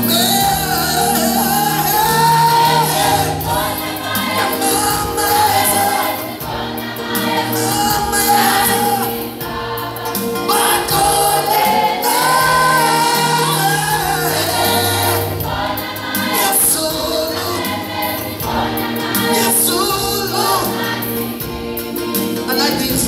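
A gospel choir singing a song in several voices.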